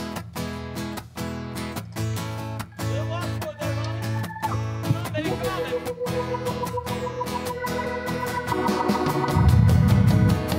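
Live rock band playing the intro of a song: a steady rhythm on guitars over bass, with held organ notes joining about halfway. Near the end the full band comes in, clearly louder.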